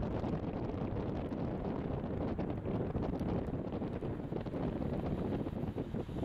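Steady low rumble of wind buffeting the camera's microphone.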